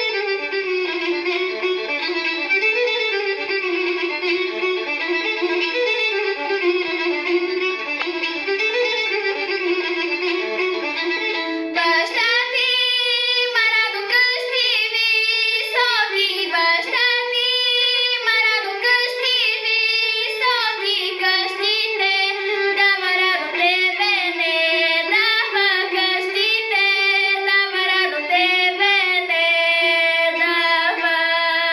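A girl singing a Bulgarian Shopluk folk song over a recorded instrumental accompaniment: the accompaniment plays a sustained melody alone for about the first twelve seconds, then her voice comes in and carries the tune to the end.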